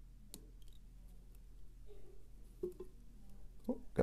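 Faint clicks and small handling sounds of a whip-finish tool and tying thread being worked around a fly hook held in a vise, over a low steady hum.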